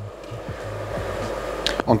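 Water at the boil in a stainless steel pot on an electric hob: a steady hiss that grows slightly louder.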